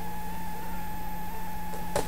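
Steady electrical hum with a faint higher whine, the background noise of the recording setup, and a short click or rustle of handling near the end.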